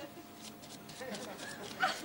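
A deck of playing cards being shuffled in the hands, a quick run of light clicks and flicks. About halfway through, a voice makes a few short wordless vocal sounds.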